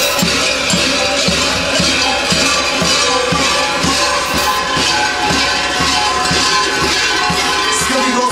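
Many large kukeri bells worn at the dancers' waists clanging together in a steady rhythm as the dancers sway and step. A low beat lands about two and a half times a second.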